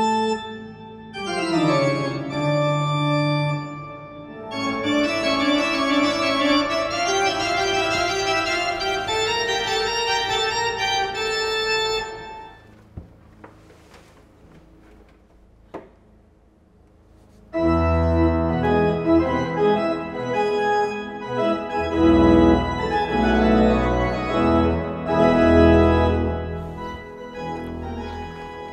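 Pipe organ in the abbey church playing sustained chords. About twelve seconds in it stops for roughly five seconds, then comes back louder and fuller with deep pedal bass notes, easing off near the end.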